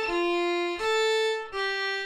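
Solo violin playing a slow phrase of separate held notes, about one every three quarters of a second, the pitch stepping down, back up and down again. It is one line of an Estonian folk tune, played slowly for learners to pick up by ear.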